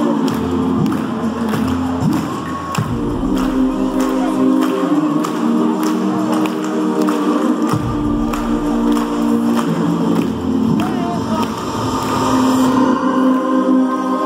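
Live concert music with a band playing sustained chords over a steady beat and sung vocals, heard from far back in an arena through a phone microphone.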